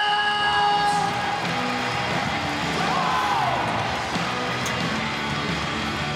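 A ring announcer's long, drawn-out call of a wrestler's name ends about a second in. An arena crowd then cheers over entrance music.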